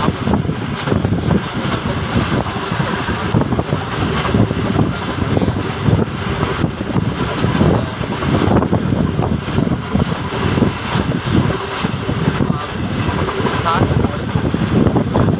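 Running noise of a passenger train at speed, heard from inside a carriage by the window: wheels rumbling and knocking on the rails, with wind rushing past the microphone.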